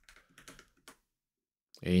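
A few faint clicks of computer keyboard keys in the first second, then quiet.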